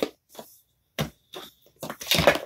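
Handling noise: several short, unevenly spaced taps and clicks as a Victorinox Swiss Army pocket knife is handled and moved.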